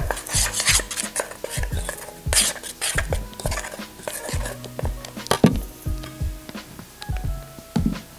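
A metal spoon stirring and scraping around a stainless steel pot, with repeated clinks against its sides.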